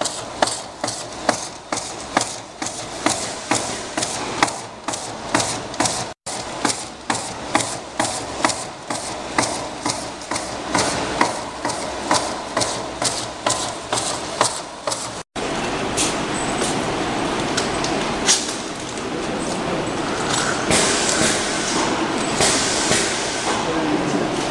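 Automatic bottle labeling machine running, with a regular clicking a little over twice a second. The sound breaks off briefly twice, and for the last third it becomes a steadier mechanical noise with scattered clicks.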